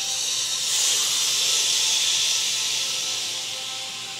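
Several people breathing out together on a long, sustained 'sh' (esh) sound. It starts abruptly and tapers off gradually toward the end. It is a singers' breathing exercise to extend the exhalation.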